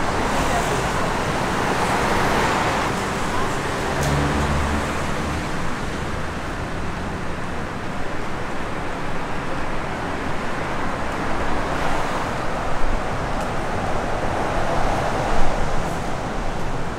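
City street traffic: a steady wash of road noise with cars passing, swelling about two seconds in and again near the end, with a brief low rumble about four seconds in.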